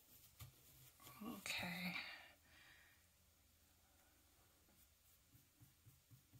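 A brief whispered vocal sound from a woman, about a second in, over otherwise near-silent room tone.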